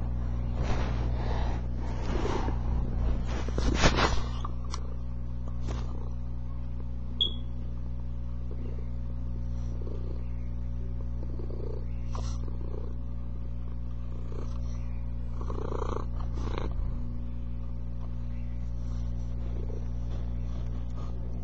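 Domestic cat purring steadily, right against the microphone. For the first few seconds there is rustling as the cat or its fur rubs on the microphone, and a few faint clicks come later.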